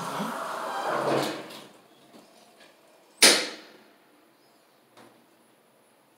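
GYG elevator car's sliding doors running shut with a rushing noise for under two seconds, then one sharp, loud clunk about three seconds in, followed by a faint click near the end.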